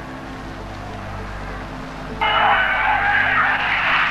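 Football stadium crowd roar on an old match recording, surging up suddenly about halfway through and staying loud.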